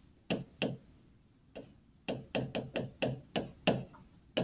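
A stylus tapping on a touchscreen, with a sharp click at each pen stroke as a handwritten formula is written. There are two clicks at first, a single one, then a quicker run of about eight clicks, some four or five a second.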